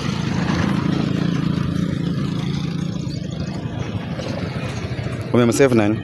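A motor vehicle engine running nearby: a steady low rumble that slowly fades. A short burst of speech comes near the end.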